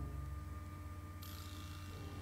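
Low steady hum with a faint, steady higher tone over it; a soft hiss comes in just past the middle.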